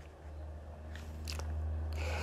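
A pause in speech: a steady low hum with a few faint clicks.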